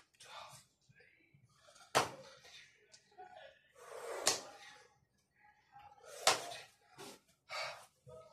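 A man's sharp, forceful exhalations while exercising, three strong puffs about two seconds apart with softer breaths between.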